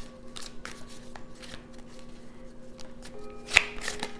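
Tarot cards shuffled and handled by hand: a scatter of soft, quick clicks with one sharper snap about three and a half seconds in, over faint background music of held notes.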